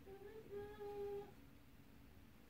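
A person humming quietly, with a short note followed by a longer held one, stopping about a second in.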